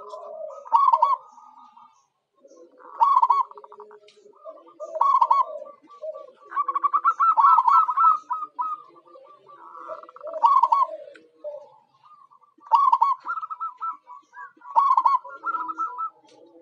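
Zebra doves (perkutut) cooing: repeated staccato, trilling coo phrases every two to three seconds, with a longer, faster run of trills a little before the middle.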